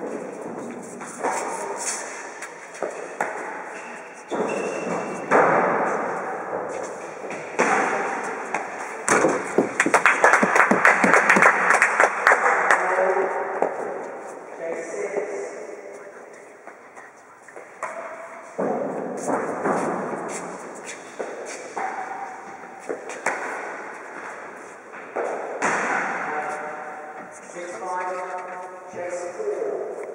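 Real tennis play: the ball knocked by rackets and thudding off the floor and walls of the court, each knock echoing in the large hall, with a dense run of knocks about a third of the way in.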